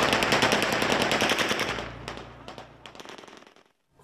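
Automatic gunfire in a long rapid burst of evenly spaced shots over crowd noise, fading away in the second half.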